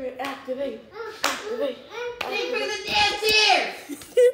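A girl's high voice making wordless sounds that rise and fall in pitch, with a couple of sharp hand claps about one and two seconds in.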